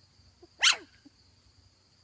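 A Shetland sheepdog puppy gives a single short, high-pitched yip that drops in pitch, about two-thirds of a second in.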